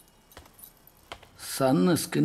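Near quiet with a couple of faint clicks, then a man's voice breaks in loudly in the last half second.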